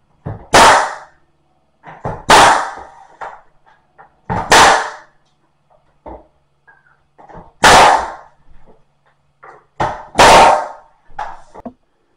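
Power staple gun firing five times, a few seconds apart, driving staples through door trim into the frame. Each shot is a sharp crack, with lighter clicks of the tool being positioned in between.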